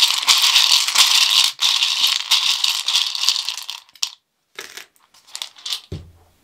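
Small hard candy hearts rattling as they are shaken and stirred in a small bowl for about four seconds, then a few scattered clicks as some are tipped out onto the cards on the table.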